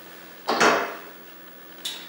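A hard part or tool set down on a wooden tabletop with a clatter about half a second in, then a short click near the end.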